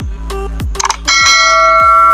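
Electronic music with a steady kick-drum beat. About a second in, a bright notification-bell ding rings out and holds: a sound effect for a subscribe bell button.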